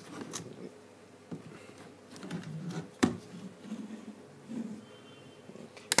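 Plastic battery pack of a Nokia 1000 mobile phone being fitted into its back: scattered clicks and rubbing of plastic, with one sharp, loud click about halfway through as the battery latch snaps in, and a quick double click near the end.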